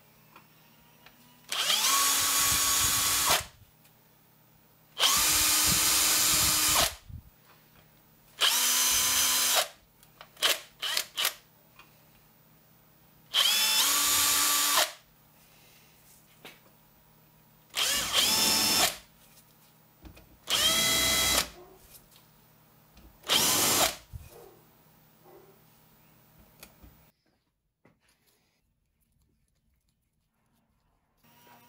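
Hand-held power drill running in about seven short runs of one to two seconds each, its pitch rising as it spins up at the start of a run. It is drilling 3 mm clearance holes and countersinks in a resin printer's FEP frame.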